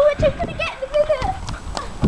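Young women's voices laughing and making vocal noises, with footsteps on the pavement as they walk.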